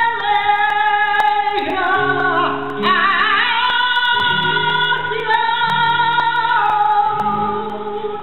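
Flamenco cante: a woman singing long, held, ornamented notes with wavering melismas, accompanied by a flamenco guitar.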